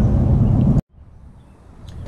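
Steady low rumbling noise that cuts off abruptly less than a second in, followed by a faint, quiet background.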